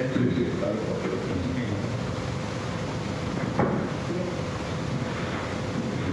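Room noise of a hall: indistinct, distant voices over a steady noisy background with a thin hum, and one short knock about three and a half seconds in.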